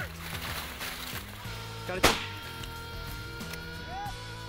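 A single shotgun shot about two seconds in, over background music of steady held notes.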